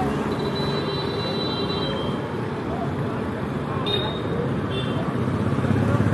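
Busy city-street traffic: motorcycles, scooters and auto-rickshaws running past with a steady engine hum, under the voices of passers-by. A few brief high-pitched tones and clicks cut through, about a second in and again about four seconds in.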